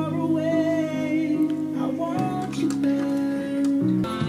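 A song playing, with acoustic guitar and a singing voice.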